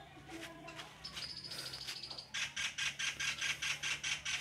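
A bird calling: a thin high note about a second in, then a rapid, even series of sharp chirps, about five or six a second, through the rest.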